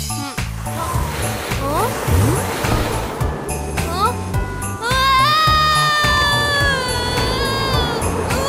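Children's song backing with a steady beat, over which a cartoon character's voice makes short rising swoops, then a long held cry from about five seconds in as the character slides down the snow slide on a sled.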